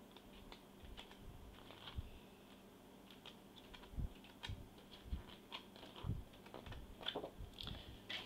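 Sheets of patterned paper in a scrapbook paper pad being flipped one after another: faint paper rustles and light clicks, with a few dull knocks.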